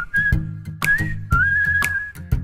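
Background music: a whistled melody over a bass line and a steady beat of sharp clicks, about two a second.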